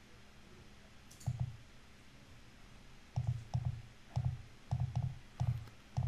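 Computer mouse button clicking: a quick double click just after a second in, then a run of about six clicks a fraction of a second apart, stepping a calendar forward month by month.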